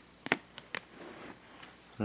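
Baseball cards being handled: a few light clicks in the first second as a card is slid off the stack, then faint rustling.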